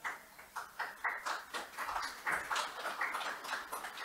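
Scattered applause from a small audience, the individual claps distinct and irregular.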